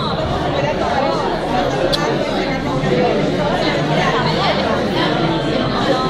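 Crowd chatter: many people talking at once, their voices overlapping into a steady babble.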